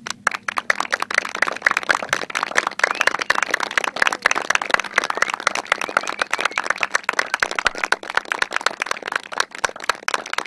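Audience applauding: many hands clapping in a dense, steady patter that breaks out suddenly.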